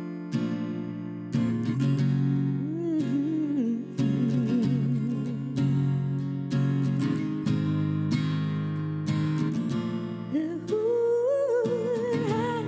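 Acoustic guitar strumming chords to open a slow song, with a woman's voice singing long, wavering notes over it a couple of seconds in and again near the end.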